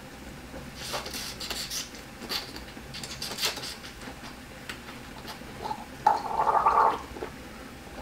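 A man slurping air through a mouthful of bokbunja (Korean black raspberry wine), bubbling it in his mouth to bring out the aroma: a series of short hissing slurps in the first few seconds, then a louder gurgle about six seconds in.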